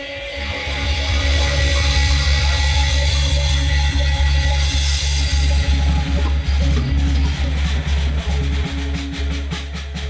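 Live funk-rock band playing: electric guitars over a held low bass note and a drum kit with cymbals. In the second half the drum strokes come faster and closer together, building up.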